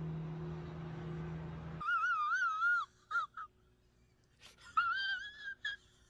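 A steady low hum for about the first two seconds gives way to a high, wavering wail with heavy vibrato, heard twice with short squeaks in between.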